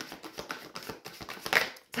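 A deck of tarot cards being shuffled by hand, a rapid run of small clicks and flicks of card edges, with a louder swish about a second and a half in as a card is pulled from the deck.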